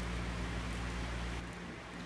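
A steady low electrical hum with a faint hiss: background room tone, with no distinct event. The deepest part of the hum drops off about a second and a half in.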